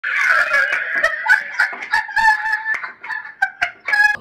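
Loud, high-pitched laughter from two women, coming in quick bursts that break into short gasps near the end.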